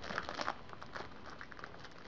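Wrapping paper on a gift-wrapped package crinkling as it is handled and picked at with a blade. A cluster of crackles comes in the first half second, then scattered small crackles.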